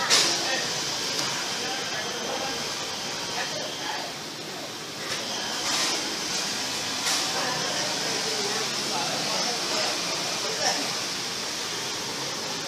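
Indistinct chatter of a crowd inside a temple hall over a steady high hiss, with a sharp click at the very start and a couple more around the middle.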